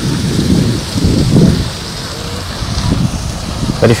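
Wind buffeting a clip-on microphone: an uneven low rumble and rush of noise.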